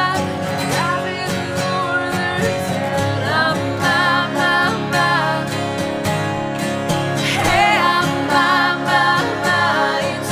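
Acoustic folk-pop performance: three acoustic guitars strumming together under a woman's lead voice and men's harmony singing, the voices held without clear words.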